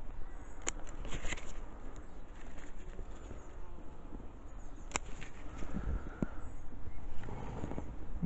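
Bonsai scissors snipping shoots off a lime tree: a few sharp snips, the clearest about a second in and again about four seconds later, over a low steady rumble.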